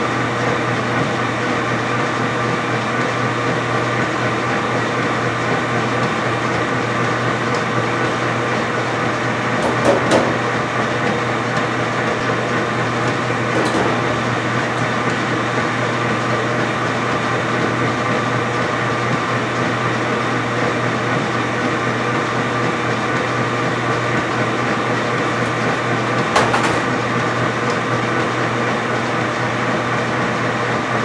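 A laundry machine running with a steady, even mechanical hum. Two short knocks break through it, one about a third of the way in and one near the end.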